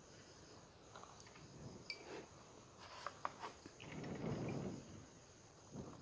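Faint handling sounds of a steel tumbler being pressed through slices of soft white bread on a wooden chopping board to cut out rounds: a few light clicks and a soft rustle about four seconds in. A faint steady high-pitched hum runs underneath.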